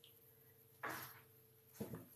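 Near silence: quiet room tone with a faint steady hum, broken by two short, soft noises about a second apart.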